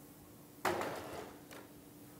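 A single sharp knock or clunk a little after half a second in, dying away over about half a second, then a fainter click about a second later, over quiet room tone.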